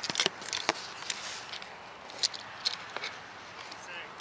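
Handling noise from a model rocket being picked over for its altimeter: a quick cluster of light clicks and rustles in the first second, then scattered single ticks.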